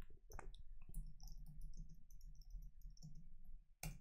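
A few faint clicks from a computer mouse and keyboard as someone works at a computer, the loudest just before the end.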